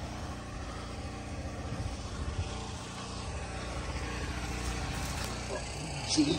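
Cat 304 mini excavator's diesel engine idling steadily.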